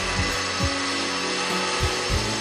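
Background music over a steady mechanical whir from a window shade being adjusted, with a few soft low knocks as it moves.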